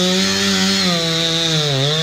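Chainsaw running at high speed while cutting into the trunk of a large pine to fell it, its pitch dipping briefly near the end as the cut loads the engine.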